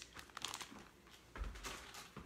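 Faint crinkling and rustling of something being handled at the kitchen counter during a quick wipe-down, with a soft thump about one and a half seconds in.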